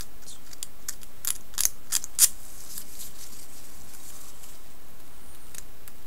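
Hobby knife blade chipping and picking at small wooden duckboard strips to make them look damaged: a quick run of small clicks and scrapes in the first two seconds, then only an odd click.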